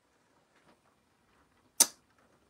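Near silence, broken near the end by one brief, sharp hiss-like burst of noise.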